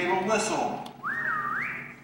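Concert band brass finishing a phrase with notes sliding downward. Then, in a short gap in the music, a single pure whistle tone slides up, dips, and slides up higher before breaking off.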